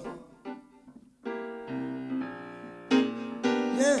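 Brodmann grand piano playing a series of held chords, coming in after a quieter first second, with a voice sliding in near the end.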